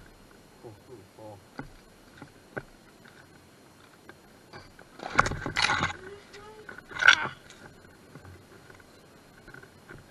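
Boots crunching through snow and cracking thin, already-broken ice, with a run of short sharp cracks early on and two louder, rougher crunches about five and seven seconds in.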